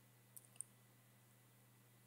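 Near silence with two faint, short clicks, about a third and just over half a second in.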